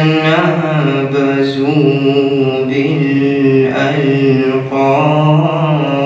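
A young man's solo Quran recitation in Arabic, chanted in long melodic phrases with wavering, ornamented pitch and a brief breath pause about two-thirds of the way through.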